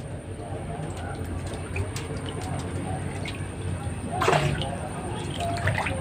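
Water sloshing and splashing in a plastic tub as an otter swims about chasing live fish, with a short voice-like sound about four seconds in.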